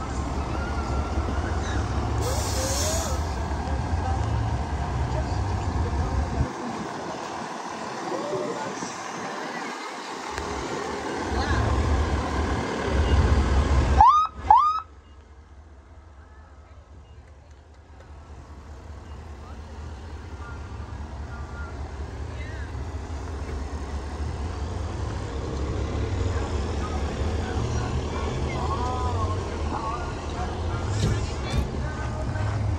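Heavy emergency-vehicle engines running as an ambulance and a fire rescue-engine drive slowly past, a deep rumble throughout. There is a short burst of hiss about two seconds in, and two quick rising-and-falling tones about halfway through. After that the sound drops away and the rumble builds again as the fire truck draws near.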